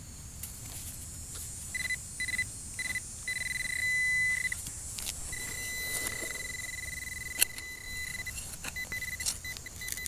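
Handheld metal-detecting pinpointer probed into a freshly dug hole, beeping a steady high tone, first in short pulses, then unbroken for about three seconds, then in short beeps again: it is sounding on a metal target in the soil. A sharp click comes about seven seconds in.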